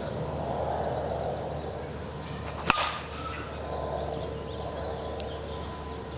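A softball bat hitting a pitched ball: one sharp crack about two and a half seconds in, just after a brief swish of the swing.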